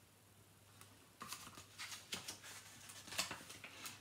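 Paperback picture book being handled and a page turned: after about a second of quiet, a run of soft papery rustles and small clicks.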